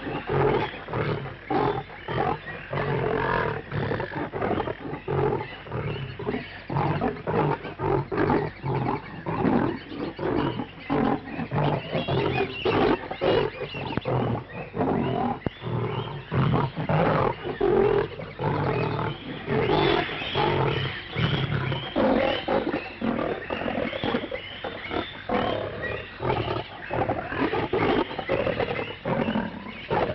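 Animals roaring, a dense unbroken run of repeated rough roars and calls.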